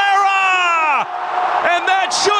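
A man's long held shout, one drawn-out note that falls in pitch and breaks off about a second in, leaving stadium crowd cheering after it.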